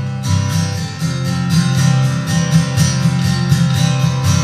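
Acoustic guitar strummed in a steady, even rhythm on its own, an instrumental bar between sung lines of a country-folk song.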